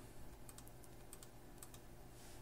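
Faint clicks of a computer mouse in a quiet room: a few quick clicks, roughly in pairs, spread across the two seconds.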